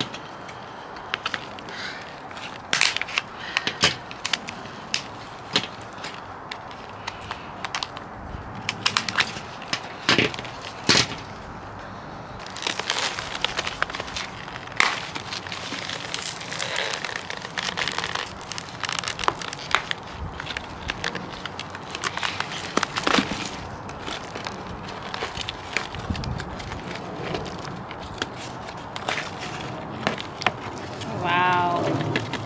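Thin plastic nursery pot being cut with scissors and torn away from a root-bound plant, the flexible plastic crackling and snapping in irregular sharp bursts. Compost rustles as the rootball is worked loose.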